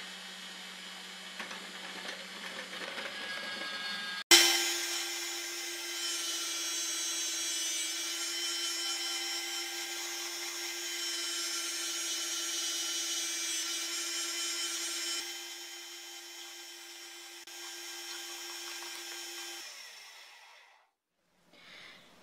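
Electric food processor's grating drum running steadily with a motor hum as potatoes are pushed through to be finely grated. About four seconds in, the hum jumps higher and louder. Near the end the motor winds down and stops.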